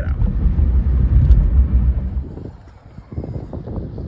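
Car driving, heard from inside the cabin as a steady low road rumble, which gives way to a quieter background about two and a half seconds in.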